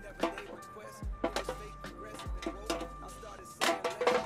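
Background music with a slow, steady beat: deep thumps about every second and a bit, with held tones over them.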